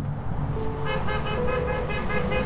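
Outdoor vehicle sound: a steady low rumble and, from about a second in, a pitched horn-like tone pulsing several times a second.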